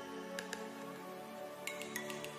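Soft background music of held notes, over a few light clicks of plastic lids being pressed onto small 2 oz disposable portion cups, a pair about half a second in and a cluster near the end.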